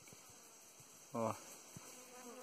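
Faint forest background hiss, then near the end the low, wavering flight buzz of a guaraipo (Melipona bicolor) stingless bee forager sets in as it flies toward the nest.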